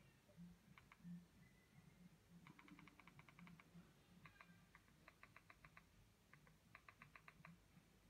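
Near silence with faint quick runs of ticks, about ten a second, from moving the cursor across the on-screen keyboard of an Android TV box's Play Store search with the remote.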